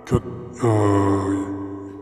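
A man's voice chanting: a short syllable, then one long note held at a steady pitch for over a second.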